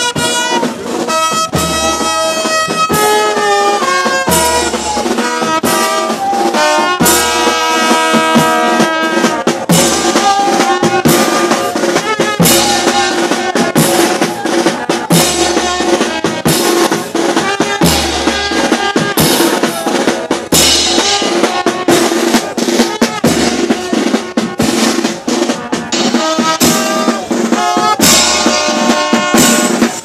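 Marching brass band playing: trumpets hold the tune over a steady beat of snare and bass drums.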